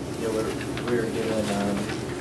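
Indistinct, low-pitched voice murmuring off-microphone, with one held low hum about halfway through.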